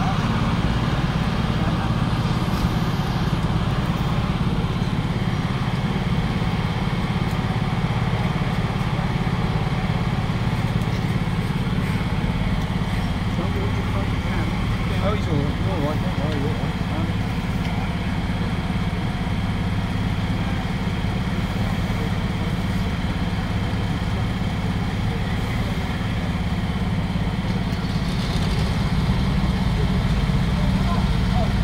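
Heavy-haulage truck's diesel engine running steadily at low revs as the truck creeps slowly forward, a deep, even engine note.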